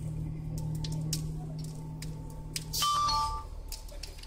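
Steady low machinery hum with scattered sharp clicks, and a short two-tone beep that steps down in pitch about three seconds in, the loudest sound here.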